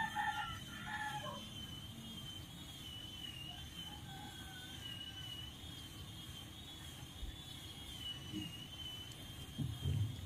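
A faint, distant bird call with several pitched notes in the first second and a half, and a weaker call about four seconds in, over quiet background with a faint high steady whine.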